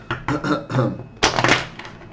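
A man clearing his throat once, a short rasping burst about a second in.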